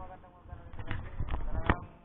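Background voices chattering, with three or four sharp knocks in the second half, the last the loudest.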